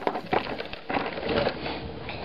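Plastic shrink wrap of a case of water bottles crinkling and crackling irregularly as a bottle is pulled out of the pack, with light knocks of the plastic bottles.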